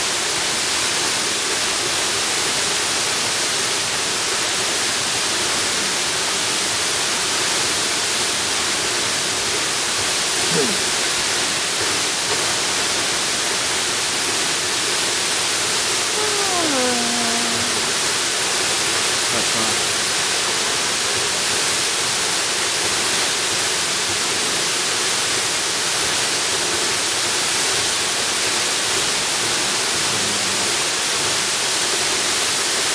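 Waterfall: a steady, even rush of falling water.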